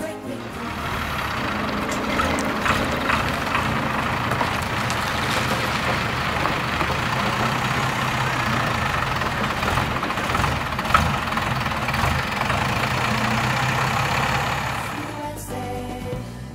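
Old lorry's diesel engine running steadily as the truck rolls slowly forward, with a single sharp knock about eleven seconds in.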